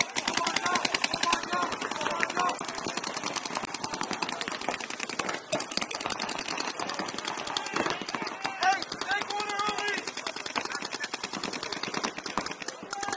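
Paintball markers firing in rapid, almost continuous strings, many shots a second, with a brief lull about five and a half seconds in.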